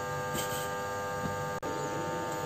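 A steady electrical hum made of many even tones, with a momentary dropout about one and a half seconds in.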